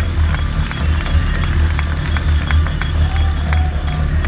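Live band playing loud music over a PA, with heavy bass and a steady beat.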